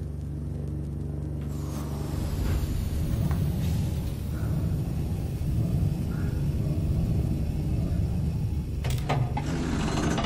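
A low mechanical hum that, about two seconds in, swells into a louder, rougher low drone, with a few sharp clicks near the end.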